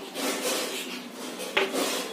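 Chalk scratching on a chalkboard as a word is written by hand: a run of short rasping strokes, with a sharper knock of the chalk about one and a half seconds in.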